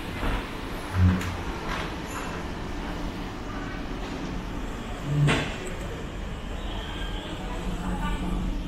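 Steady low machinery rumble inside a ferry's passenger deck, with a short thump about a second in and another, sharper knock about five seconds in.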